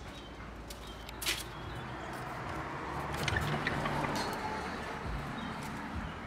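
A wooden gate's latch clicks about a second in, then outdoor ambience with a swell of noise in the middle and faint bird chirps.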